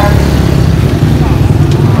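Motorbike engine idling: a steady low hum.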